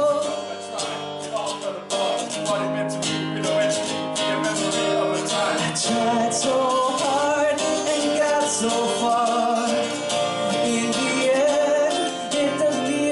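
Live music: acoustic guitar played with male voices singing along.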